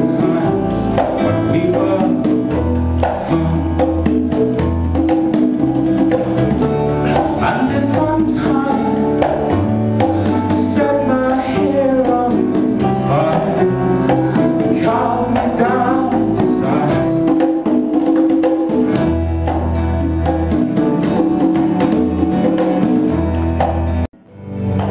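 A small band playing a song live: a man singing over strummed acoustic guitar, with electric guitar, bass guitar and congas.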